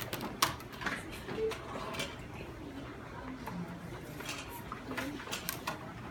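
Scattered light knocks and clicks of children handling small whiteboards, markers and dice on tables, a few sharp ones about a second in, at two seconds and twice near the end, with faint children's voices in between.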